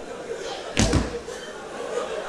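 A single loud slam just under a second in, a sharp bang with a heavy low thud and a short tail.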